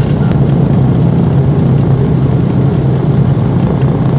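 The DC-3's radial piston engine idling on the ground, a steady low drone heard from inside the cabin while the propeller turns.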